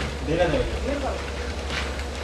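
Faint, indistinct voices over a steady low rumble.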